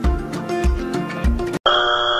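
Upbeat background music with a steady beat, cut off near the end by a flat, steady buzzer tone: a "wrong answer" buzzer sound effect marking a rejection.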